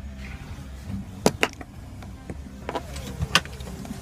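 A few sharp clicks and knocks from the SUV's interior seat hardware as it is handled, the loudest about a second in and again near the end, over a low steady hum.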